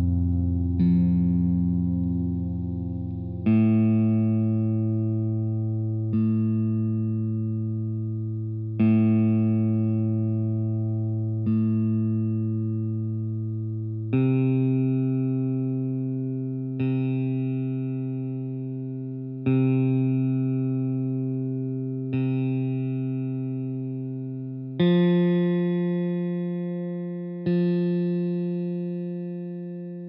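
Guitar open strings plucked one at a time as tuning reference notes for AirTap tuning (F-A-C-F-C-F), each note ringing and fading before the next, about every two and a half seconds. Two plucks of the low F string (87 Hz) are followed by four of the A string (110 Hz), then four of the C string (131 Hz), and two of the F string (175 Hz) near the end.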